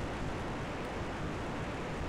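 Steady digital hash from the Orbcomm FM114 satellite's downlink near 137.74 MHz, demodulated by an SDR receiver: an even, hiss-like noise without tones.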